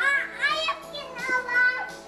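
A young child's high-pitched voice calling out with rising and falling pitch, over music playing in the background.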